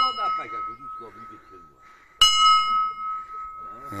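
Large rusty hanging bell being rung: the ring from a stroke just before fades, then it is struck again loudly about two seconds in, with one steady ringing note and overtones dying away.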